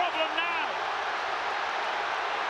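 Large stadium crowd cheering in a steady, even wash of noise after a goal, with a commentator's voice briefly over it at the start.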